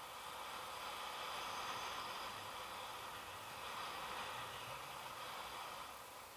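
Steady rushing hiss of air streaming past the camera during a paraglider flight, a little louder in the middle.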